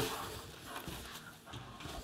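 Padded nylon camera insert (a small core unit) being lifted out of a backpack and set on a desk: faint fabric rustling with a couple of soft knocks.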